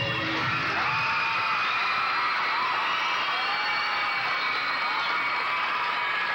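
Audience cheering and whooping during a color guard routine, over high held notes of the show music. The music's lower notes drop away as the cheering rises.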